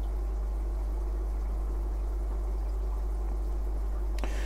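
Steady low hum with faint, even water bubbling: a running aquarium's filtration and water movement.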